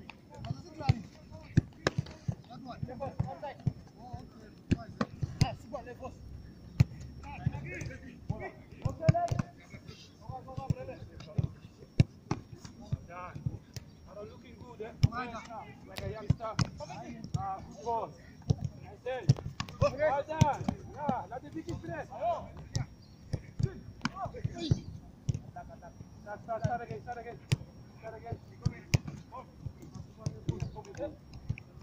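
A football being kicked and caught over and over in goalkeeper drills: many sharp thuds at irregular intervals.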